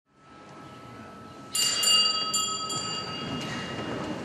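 Small high-pitched bells rung in a few quick strikes, starting about one and a half seconds in, their bright tones ringing on in the church; this is the bell signal for the start of Mass.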